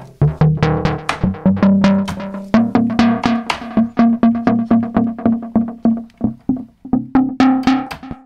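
Softube Model 82 software mono synth, modelled on the Roland SH-101, playing a fast run of short, plucky bass notes. Key velocity drives the filter, so each note opens brighter or duller, and the line steps up in pitch in the first few seconds.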